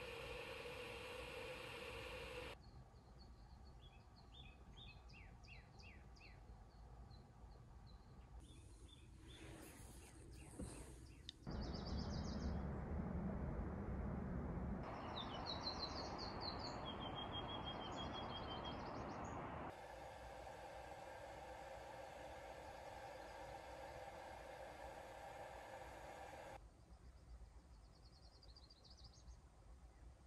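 Faint birdsong heard over a steady background hiss that changes level between cuts, with short high chirps coming and going. About halfway through, a Lucy's warbler sings a quick run of short high notes.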